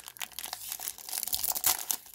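Clear plastic wrapper of a Panini Prizm football card pack crinkling and tearing as fingers peel it open, a rapid, irregular run of crackles.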